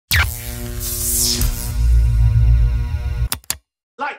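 Electronic channel intro jingle: synth music with a heavy bass, steady held notes and a sweeping swoosh about a second in, cutting off suddenly after about three seconds, followed by two short clicks.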